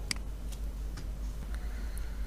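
A computer mouse clicking: one sharp click just after the start, then a few fainter ticks.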